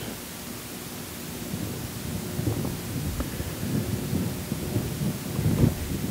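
Irregular low rumbling and rustling over a steady hiss, growing a little from about a second and a half in.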